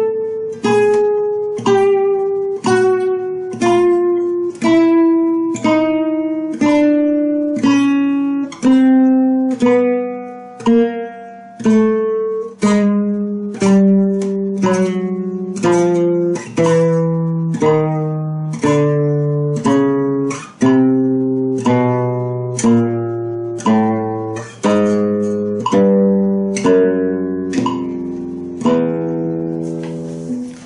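Nylon-string flamenco guitar playing a chromatic scale one plucked note at a time, each note left to ring, about one and a half notes a second. The notes step steadily down in pitch for most of the run, then climb back up near the end.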